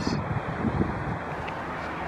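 Wind rumbling on the microphone, an uneven low buffeting with a faint hiss above it. A faint thin high whine runs through the first second or so and then stops.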